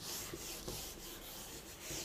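Whiteboard eraser wiping marker off a whiteboard in repeated back-and-forth strokes, a soft rubbing hiss.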